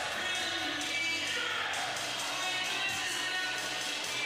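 Music playing at a steady level, with sustained notes.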